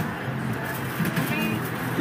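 Faint, indistinct voices over a steady outdoor background hum.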